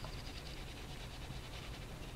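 Faint, soft scratching of an oil pastel stick rubbed across paper, over a low room hum.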